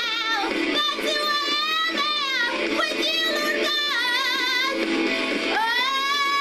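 A woman singing in a high voice, holding long notes that waver with vibrato, with short breaks between phrases; a long held note begins near the end.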